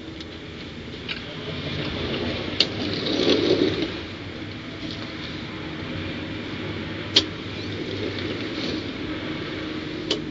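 A steady low rumble that swells about three seconds in, with two sharp clicks, one just before the swell and one about seven seconds in.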